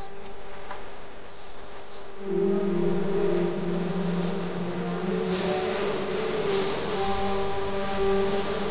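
Background music of slow, sustained notes, with a louder, wavering melody line coming in a little over two seconds in.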